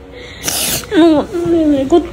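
A woman crying: a loud, sharp sobbing breath about half a second in, then a high, wavering crying voice from about one second on.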